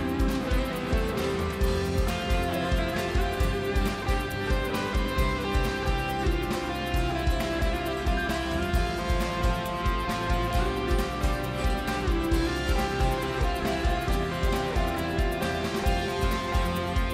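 Live church band playing an instrumental passage of a worship song: strummed guitar and bowed strings over a steady beat, about two beats a second.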